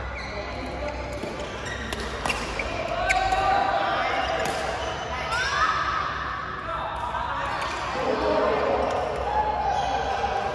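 Badminton rally: rackets hitting the shuttlecock in a series of sharp, irregular clicks, with people's voices in the hall behind.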